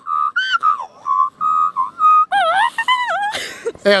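A person imitating an Australian magpie's carolling call by mouth. It starts with a run of short, steady whistled notes, then turns about halfway through into a lower, wavering warble. A short breathy burst comes near the end.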